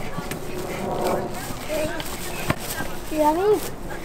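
Children's voices chattering and calling out while they run, with the soft thuds of their footfalls on grass. Near the end one child calls out with a rising and falling voice.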